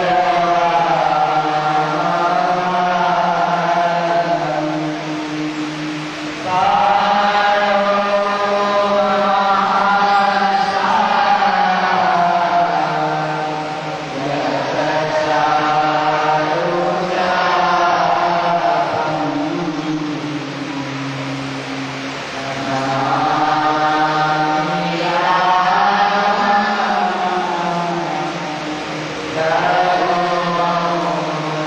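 Devotional mantra chanting: voices intone long, held phrases on a steady pitch, each new phrase swelling in louder, about four times.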